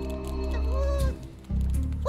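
Cartoon background music with sustained low notes, and a short pitched call that rises and falls about half a second in. The music briefly drops away just past the middle before resuming.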